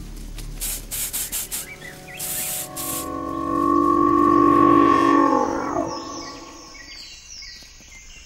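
Film sound effects: a run of short hissing bursts, then a held droning tone with a lower second tone that wavers and bends downward as it fades, with faint high chirps gliding down near the end.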